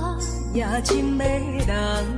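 Music from a Taiwanese Hokkien pop ballad: a melody line with heavy vibrato over a steady bass, with a few light percussion strokes.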